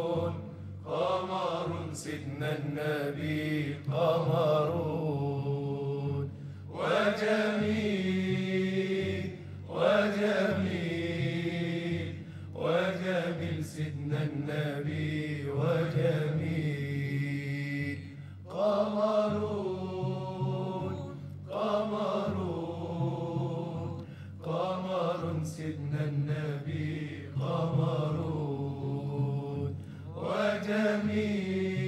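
Arabic Islamic devotional chant (inshad): long, ornamented sung phrases with short breaks every few seconds, over a steady low drone.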